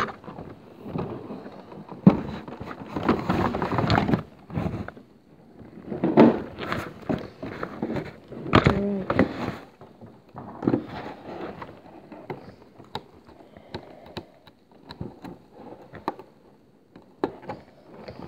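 Cardboard box and clear plastic packaging of a trading-card collection box being opened and handled: irregular rustling and crackling of plastic in bursts, with scattered sharp clicks and knocks, sparser towards the end.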